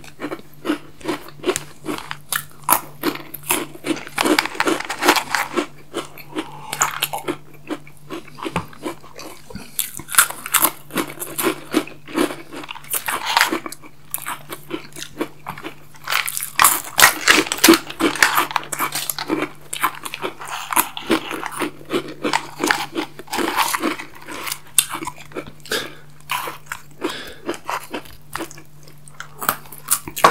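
Close-miked eating sounds: irregular crisp crunching and chewing of crispy snack sticks dipped in chocolate-hazelnut cream, with wet mouth noises, heaviest in bursts through the middle.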